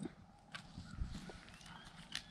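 Faint, scattered cracks and knocks of a dog gnawing and tugging at a dry wooden stick on grass. A faint, thin high tone joins in the second half.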